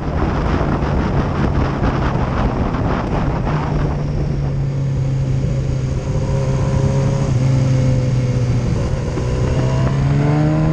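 Motorcycle engine running at a steady note under the rider, with heavy wind rush on the microphone for the first few seconds. About four seconds in the wind drops away as the bike slows for a bend, leaving the engine note clearer, which dips slightly near the end.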